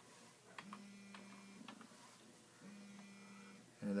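A few faint keystrokes on a computer keyboard as a word is typed, over a low steady hum that comes and goes twice.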